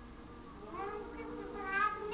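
A toddler's wordless, high-pitched vocalizing: a few rising and falling squeal-like sounds that start under a second in and grow louder toward the end.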